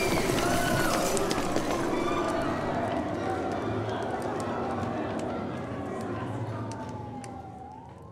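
Aftermath of a stunt explosion: fire crackling in sharp scattered clicks, with a siren wailing in the background. A voice is heard briefly, and the sound fades out.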